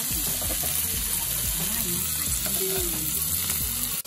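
Tandoori chicken and kebabs sizzling steadily on a hot iron sizzler plate.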